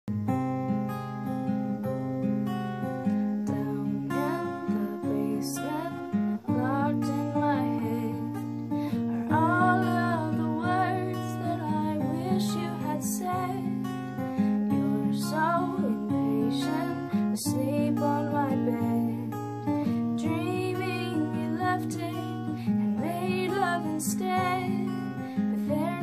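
Steel-string acoustic guitar, capoed, playing a slow chord accompaniment, with a woman's voice singing over it after a few seconds of guitar alone.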